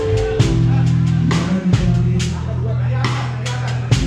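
Live band music with a drum kit played close by: sharp drum and cymbal strokes over sustained bass notes that shift pitch a few times.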